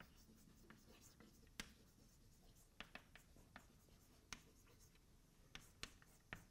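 Chalk on a blackboard while writing: faint, short, sharp taps and scrapes, irregularly spaced with pauses between strokes.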